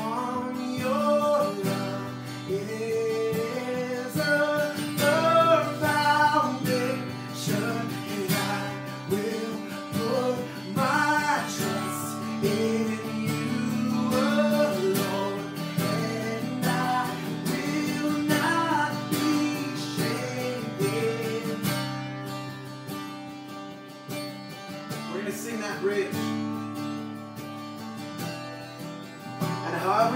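A man singing to his own strummed acoustic guitar, the melody carried by his voice over steady chords.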